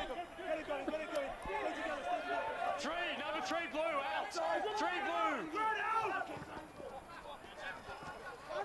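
Several men's voices shouting over one another in short calls, as rugby players do around a driving maul, with a few brief sharp clicks.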